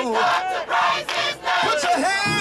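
A large gospel choir singing and shouting together, many voices at once, over repeated hand-clapping.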